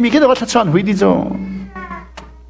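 A man's voice in animated, sing-song delivery, its pitch swooping up and down and then settling into one long drawn-out note that fades near the end.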